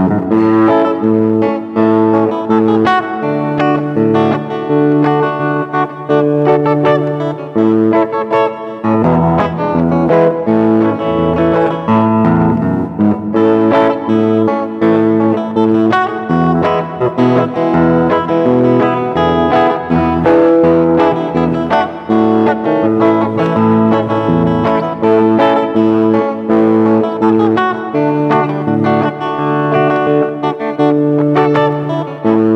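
Solid-body single-cutaway electric guitar played fingerstyle: an instrumental melody picked over a moving bass line, with no pauses.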